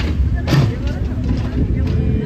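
People talking over a steady low rumble, with a brief sharp sound about half a second in.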